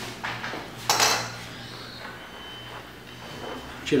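Metal kitchen tongs clattering against a wire grill rack and metal tray as a roast is lifted off: two short clanks in the first second, the second louder.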